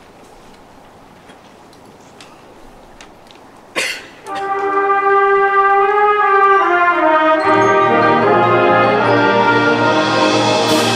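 Symphonic concert band starting a piece: a few seconds of hushed hall, then a sharp hit about four seconds in, and the brass come in with long held chords. Low brass join a few seconds later and the chords fill out.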